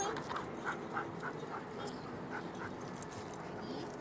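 A dog giving a quick run of short, high whines, several a second, over the first couple of seconds, then quieter.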